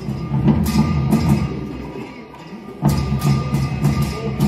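Tibetan opera (Ache Lhamo) percussion, drum and cymbal strikes in a quick rhythm of about two to three a second. It drops away about two seconds in and comes back loudly near three seconds.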